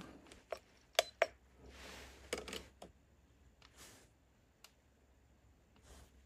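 Faint, scattered clicks and taps from handling a Crosman 1875 Remington CO2 revolver and a digital trigger pull gauge as the gun is cocked and the gauge is set on its trigger for another pull test.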